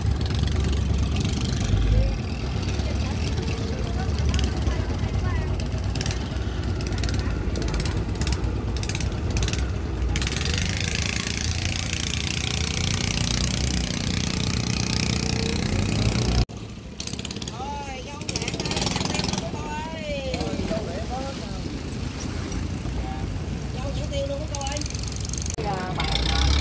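Motorboat engine running with a steady low rumble and a rushing of water and wind. About two-thirds of the way through it drops off suddenly to a quieter stretch with people's voices in the background.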